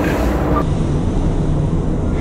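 Quiet room audio boosted hard in editing, so it comes out as a loud rumbling hiss of amplified background noise. About half a second in it is replayed slowed down, and the top of the sound drops away.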